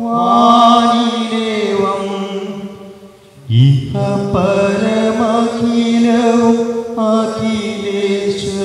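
Liturgical chant sung over a steady, sustained accompanying tone. The singing fades to a brief pause about three seconds in, then resumes.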